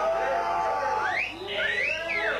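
Live black metal band on stage, its amplified sound dominated by wavering, siren-like sliding tones, with two rising sweeps in the second half.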